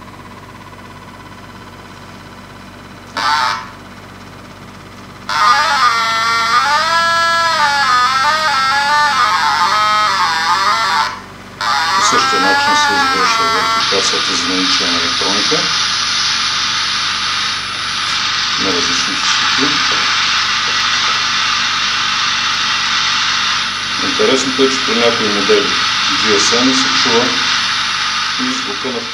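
Audio-mode output of an ST-400 Cayman non-linear junction detector aimed at a smartphone: a low hum at first, then warbling tones that rise and fall for several seconds, then a steady hiss of static with muffled voice-like fragments, the phone's microphone or speaker sound returned by the detector.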